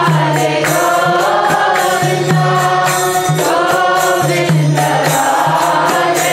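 Group of voices chanting a devotional mantra together to music, over a steady beat of struck percussion and a pulsing low accompanying note.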